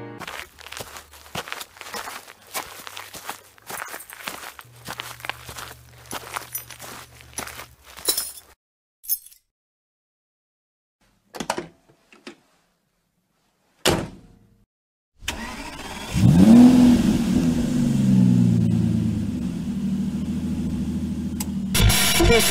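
A run of clicks and clattering, then a few isolated sharp knocks. About two-thirds of the way in, a car engine starts, revs briefly and settles into a steady idle.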